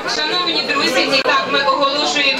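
Several people talking at once in a large hall, no one voice clear enough to make out words.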